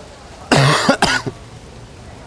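A person coughs: one loud cough about half a second in, followed by a shorter second one.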